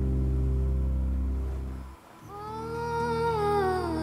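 Background music score: a low sustained drone that fades away about halfway through, then a wordless voice humming a slow, gliding melody over a low held tone.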